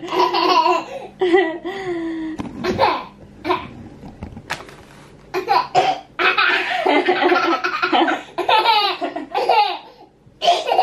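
A toddler laughing hard in repeated bursts of belly laughter, with a short lull about four seconds in.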